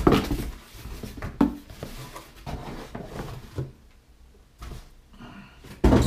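A wire crawfish trap being unpacked from a cardboard shipping box: the cardboard rustles and scrapes, with a few thumps. The loudest thumps come at the start and just before the end.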